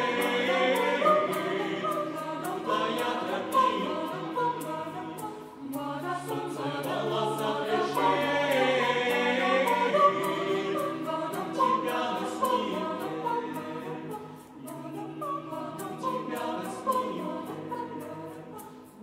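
Mixed choir singing in harmony, unaccompanied, over a steady light percussive tick. The singing falls away briefly between phrases a few times.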